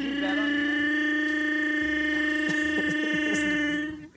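A man's Chewbacca impression: one long held vocal call that rises slightly in pitch at the start, then holds steady and loud for nearly four seconds.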